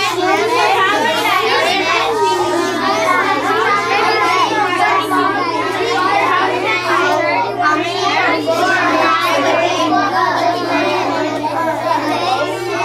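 A roomful of young children talking at once, a loud overlapping chatter of many voices with no single speaker standing out, over a steady low hum.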